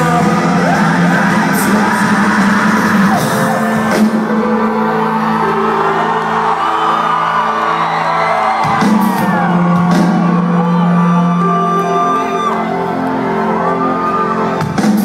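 Live rock band playing loudly in a large hall, with held chords and singing, and the crowd whooping and shouting over the music.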